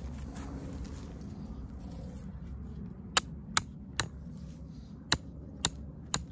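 The hammer poll of a hatchet made from an old Plumb roofing hatchet tapping a tent stake into the ground. Five short, sharp taps begin about halfway through, each half a second to a second apart.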